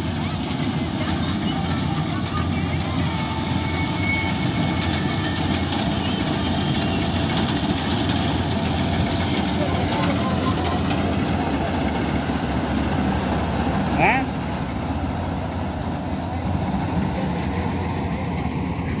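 Malkit 997 combine harvester running steadily as it cuts wheat, its engine and threshing gear making a dense rumbling noise as it passes close by. A short rising squeak stands out about fourteen seconds in.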